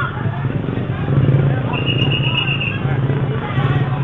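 Street crowd chatter over a vehicle engine idling nearby, with a brief high steady tone about two seconds in.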